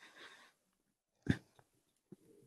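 Faint breath in a pause between words, then one brief click a little past halfway.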